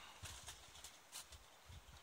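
Near silence outdoors, with a few faint, soft clicks or knocks scattered through it.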